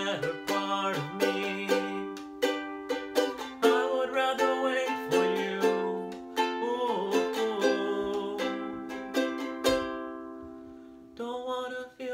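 Ukulele strummed in chords with a man singing along in long held notes. Near the end the strumming stops and a chord rings out and fades before the strumming starts again.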